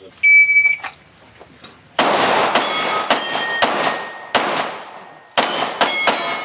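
A shot timer's start beep. About a second and a half later comes a string of 9 mm shots from a Glock 17 Gen4 pistol spread over about four seconds, with AR500 steel plates ringing as they are hit. The last shot comes near the end.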